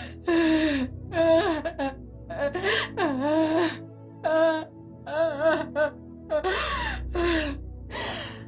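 A woman wailing and sobbing in a run of short, gasping cries whose pitch rises and falls, over a low sustained music underscore.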